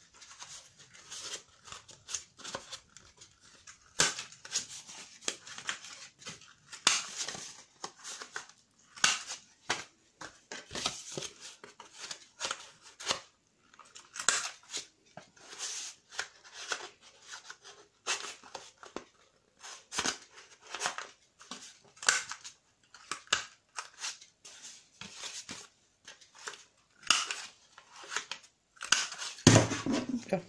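Handheld corner punch cutting the corners of kraft cardboard cards: a long run of short, sharp crunching clicks, about one a second, with paper and card being handled between them.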